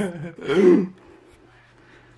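A man's short vocal sound, a throat clearing, about half a second in, then quiet room tone with a faint low hum.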